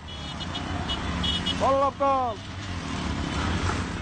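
Small three-wheeled auto-rickshaw (tuk-tuk) engines running as a column of them passes close by, a steady low drone. A man shouts twice about two seconds in, and short high beeps repeat during the first second or so.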